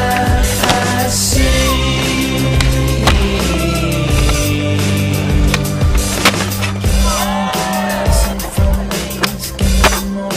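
A hip-hop music track with a steady bass line and sustained tones, overlaid by skateboard sounds: wheels rolling on concrete and sharp clacks of the board popping and landing every few seconds.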